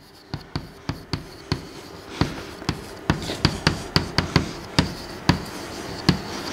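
Chalk writing on a blackboard: a quick, irregular run of sharp taps as each stroke lands, with faint scraping between them.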